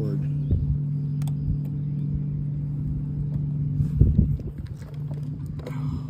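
A steady low hum, like a small motor running, over rough low rumbling from wind buffeting the microphone, with a louder low thump about four seconds in.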